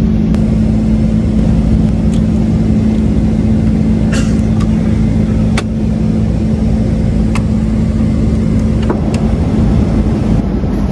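Steady, loud drone of a jet airliner's cabin with a low hum running under it. A few light clicks and taps come through it as the seat's tray table is handled.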